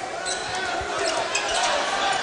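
Basketball being dribbled on an indoor hardwood court, with short thuds over the steady noise of an arena crowd that grows slightly louder.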